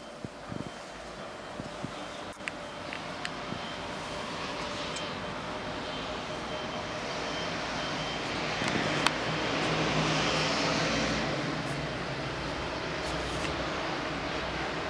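City traffic noise from the street below, growing louder and swelling to a peak about ten seconds in as a vehicle goes by. A few light clicks in the first few seconds.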